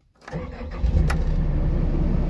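John Deere excavator's diesel engine starting, heard from inside the cab: it comes up out of silence, catches within about half a second and settles into a steady low idle, with a single click just after it catches.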